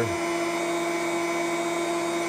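Electric pump of a small reverse-osmosis system for maple sap running with a steady hum and hiss while the system pushes sap through its filters.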